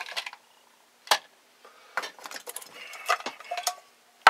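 Small clicks and clinks of hand tools and a metal tin being handled on a workbench, with one sharp click about a second in and a cluster of lighter clinks near the end.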